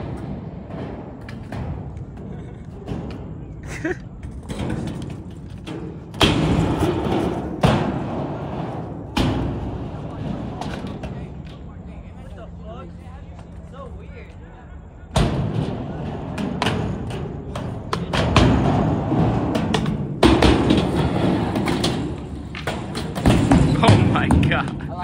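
Skateboard wheels rolling over the park's ramps in two long runs, with several sharp thuds from the board along the way.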